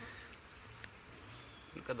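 Flying insects buzzing steadily, with a low hum.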